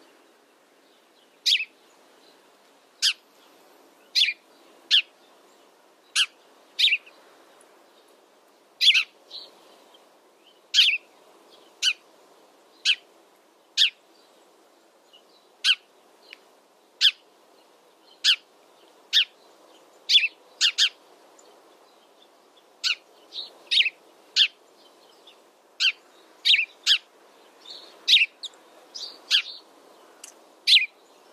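House sparrow chirping: short, sharp single chirps about every one to two seconds, some in quick pairs, over a faint steady background hiss.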